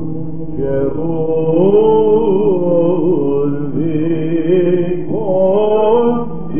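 Male Byzantine chanters (psaltes) singing a slow, melismatic first-mode melody over a steady held drone (ison). The recording is old, with the top end cut off.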